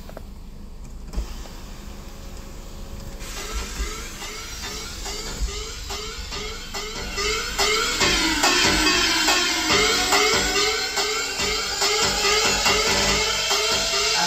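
A car's Sony CD stereo starts playing music with a steady beat through the cabin speakers about three seconds in. The music grows louder as the volume knob is turned up.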